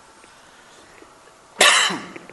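A man coughs once, loudly and sharply, near the end.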